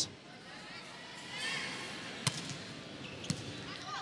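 Steady indoor arena crowd murmur with two sharp thumps about a second apart, typical of a volleyball being bounced on the court floor before a serve, and a few brief high squeaks.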